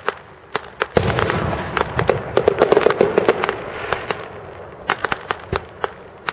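Aerial firework shell going off: a few sharp pops, then from about a second in a dense run of crackling and bangs lasting about three seconds, dying away to scattered pops near the end.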